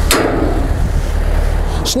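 Wind buffeting the microphone throughout as a heavy low rumble. A sharp metallic knock comes just after the start: the access platform basket's steel gate being pushed open.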